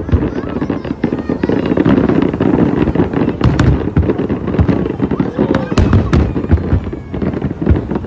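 Large aerial fireworks display: a continuous barrage of deep booming shell bursts overlapping one another, with many sharp cracks scattered throughout.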